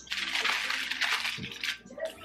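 Newspaper being crumpled by hand for the base of a charcoal chimney starter: a dense crackling rustle for the first second or so, then softer rustling.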